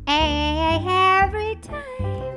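A woman singing a loud, held note with vibrato into a handheld microphone, over low instrumental accompaniment; the note ends about a second and a half in, and the accompaniment carries on.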